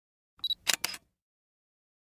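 Short intro sound effect for an animated logo: a brief high tone about half a second in, then two sharp clicks in quick succession.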